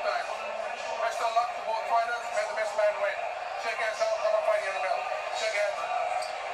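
Indistinct man's voice: a boxing referee giving the two fighters their final instructions at centre ring, heard thin and tinny through a television's speaker.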